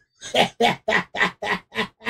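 A man laughing hard in a quick run of short bursts, about four a second.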